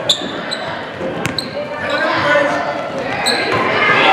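Basketball game sound on a hardwood court. Sneakers squeak sharply about four times and a ball bounces once a little over a second in, over the murmur of voices from the crowd and players.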